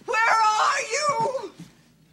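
A woman's voice crying out in distress, a wailing call that fades out about a second and a half in.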